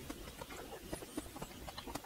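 Faint sounds of eating a mouthful of salad: soft chewing with a scatter of small, irregular clicks.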